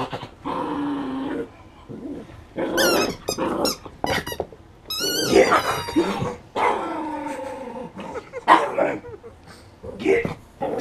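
A poodle growling as it plays with a rubber toy, in several separate stretches, with high sliding squeals about three and five seconds in.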